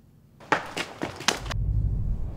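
A quick run of about five sharp knocks and thuds in about a second, then a low rumble sets in.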